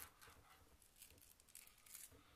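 Near silence, with a few faint rustles and ticks of a shielded Cat 6 cable's cut jacket being slid off by hand.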